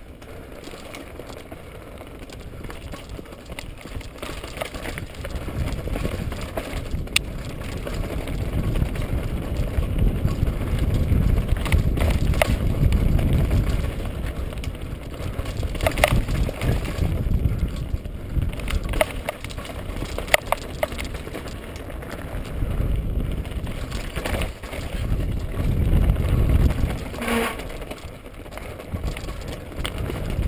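Mountain bike riding down a rocky, loose-stone descent: a steady low rumble of tyres and wind, louder after the first few seconds, with sharp knocks and clatter as the bike hits stones.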